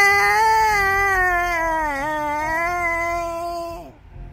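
A man singing one long held high note on the word "sky", wavering slowly in pitch with a dip about two seconds in, then breaking off abruptly near the end.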